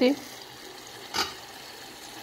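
The lid is lifted off a small saucepan, with one short clack about a second in. Under it runs a faint steady hiss of the pan still cooking on the burner.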